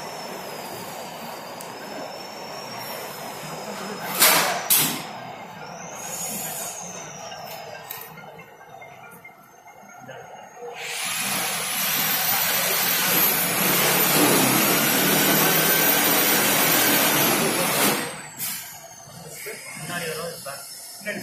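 Compressed-air paint spray gun: two short blasts of air about four seconds in, then a long, loud hiss of spraying lasting about seven seconds that stops suddenly near the end.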